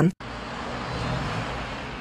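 Steady outdoor street ambience with a constant hum of traffic, starting just after a brief gap.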